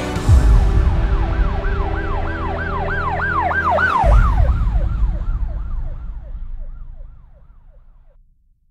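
An emergency-vehicle siren sweeping up and down in pitch about three times a second, growing louder for about four seconds, then dropping in pitch and fading away. Under it a deep low drone ends in a low boom about four seconds in.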